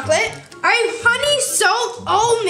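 Children's voices talking over background music.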